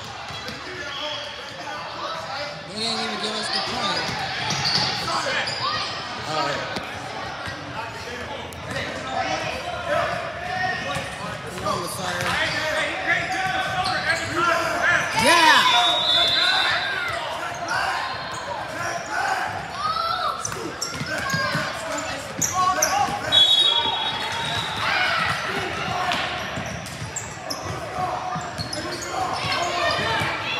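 Youth basketball game in a large gym: a ball dribbling on a hardwood court amid players' and spectators' shouts, echoing in the hall. Two short high-pitched squeaks stand out, one about halfway through and one a few seconds later.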